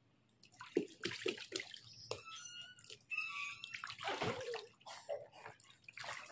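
Water splashing and sloshing in a small inflatable paddling pool as a child moves about in it, in irregular splashes that begin about half a second in.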